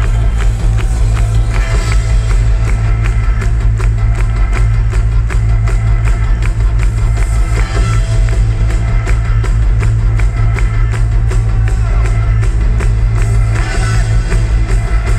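Live rock band playing loud, with a steady drum beat, bass, guitar, keyboards and trumpet and trombone. The passage is mostly instrumental. It is a crowd recording with a heavy, booming bass.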